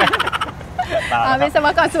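A woman and a man laughing heartily, a quick pulsed burst at first, then running into speech.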